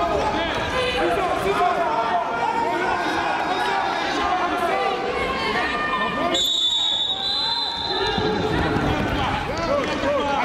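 Many voices calling out and chattering at once around a wrestling mat, with a steady high whistle tone for about a second and a half just after six seconds in.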